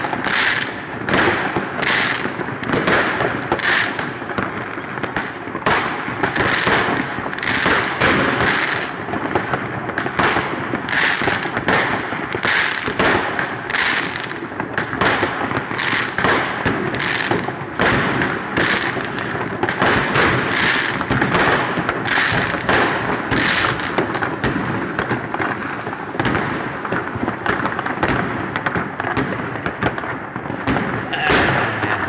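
New Year's fireworks and firecrackers going off nonstop, many at once, at a distance. Several sharp bangs a second sit over a continuous crackling din.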